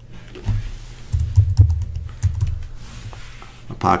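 A few computer keyboard keystrokes and mouse clicks, each with a dull thud, bunched in the first half.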